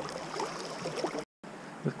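Steady hiss of river water flowing, with a few faint handling ticks. The sound drops out completely for a moment about a second and a quarter in, then a man starts talking just before the end.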